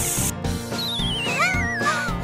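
A short spray hiss from an aerosol can, then a wobbling whistle sliding down in pitch for about a second, over cheerful background music.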